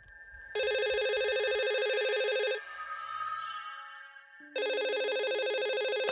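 Telephone ringing: two electronic rings, each about two seconds long, about four seconds apart, for an incoming call.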